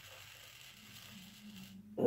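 Faint scratchy hiss of a heated tool tip being drawn slowly through foam along a metal rod, melting out a spar channel.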